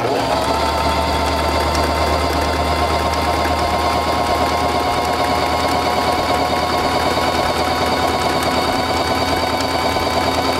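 Singer Simple 3232 sewing machine stitching a one-step buttonhole at steady speed: motor hum under a fast, even needle clatter, starting abruptly as the foot control is pressed.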